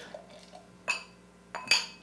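Two light clinks of glass on glass, about a second apart, as two stemmed beer glasses touch while beer is poured from one into the other.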